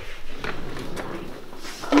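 An office chair being handled and shifted at a desk: a couple of light knocks about half a second apart, with shuffling and rustling.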